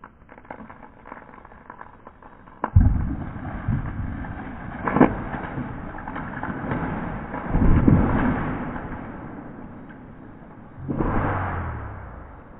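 Sections of a Western hemlock trunk being dropped and hitting the ground: a sharp heavy thud about three seconds in, then more thuds near five and eight seconds and one near the end, each trailing off in a rumble.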